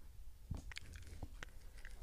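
A few faint, short clicks at irregular intervals.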